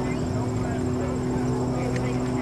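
A steady low hum held at one constant pitch, with faint voices in the background.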